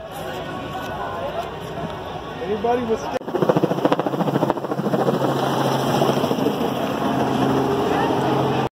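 Crowd chatter, then from about three seconds in a helicopter circling overhead, its rotor chopping fast and growing louder above the voices.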